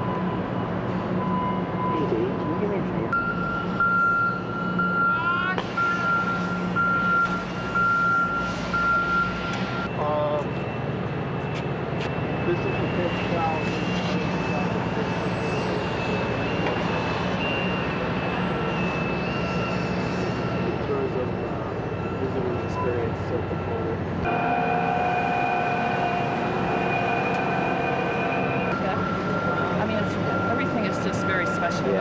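Heavy machinery engine running steadily, with a high whine over it that shifts pitch a few times.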